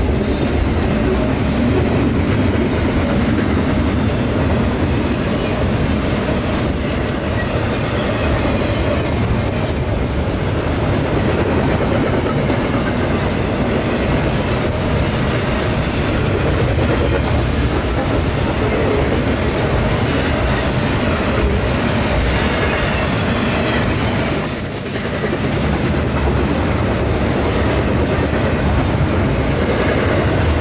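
Wheels of a long double-stack intermodal freight train rolling past at speed on steel rail: a loud, steady rush with clicking as the wheels cross rail joints. The sound dips briefly about 25 seconds in.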